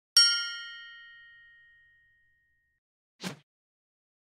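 A single metallic ding, struck sharply and ringing with several bright tones that fade away over about a second and a half, a sound effect on an animated title. About three seconds in comes a brief burst of noise.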